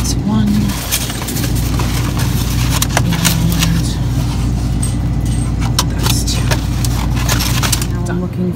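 Plastic egg cartons being handled and opened, with many irregular clicks and knocks, over a steady low hum.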